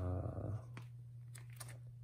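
A brief low voiced sound, like a short hum or groan, right at the start, then faint clicks and rustles of plastic binder sleeves as photocard pages are handled, over a low steady hum.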